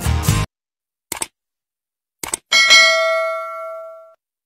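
Outro music stops half a second in. A brief swish follows, then two quick clicks and a bright multi-tone bell ding that rings and fades over about a second and a half: a subscribe-button and notification-bell sound effect.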